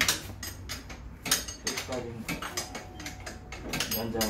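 Hand wrench working a bolt at the rear wheel of a scooter: a string of irregular, sharp metal clicks and clinks.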